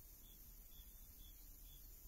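Near silence on a video call: a faint steady hiss and low hum, with faint short high-pitched chirps repeating about twice a second.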